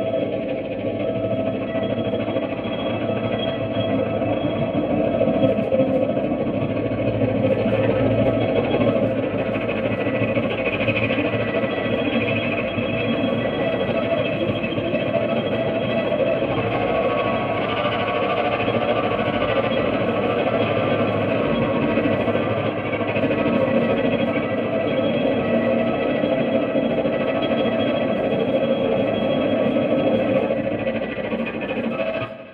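Electric guitar played through an amplifier, a dense, steady wash of sustained, overlapping notes with no breaks.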